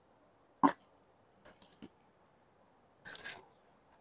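Handling noise as the recording phone is picked up and tilted: a soft knock, a few light clicks about a second and a half in, and a short scraping rustle near the end.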